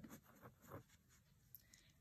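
Faint scratching of a marker pen writing on paper, a few short strokes in the first second, otherwise near silence.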